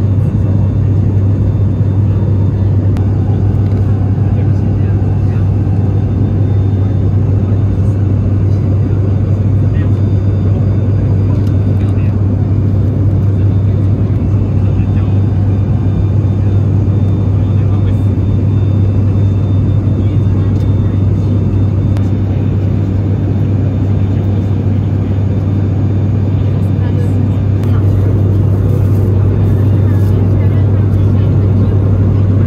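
Cabin drone of an ATR 72-600 turboprop in cruise: its six-bladed propellers give a steady, loud low hum under a constant rush of engine and air noise.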